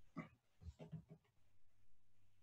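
Near silence: room tone with a faint low hum, broken by a few faint, brief sounds in the first second.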